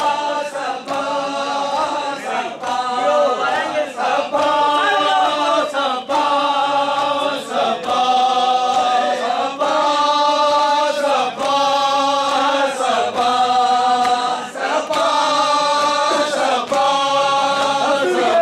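A large group of men chanting a noha (Shia mourning lament) in unison, with sharp slaps of hands striking bare chests (matam) keeping a steady beat about once a second.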